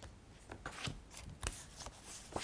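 Faint, irregular crisp rustles and clicks, about half a dozen in two seconds, like paper being handled.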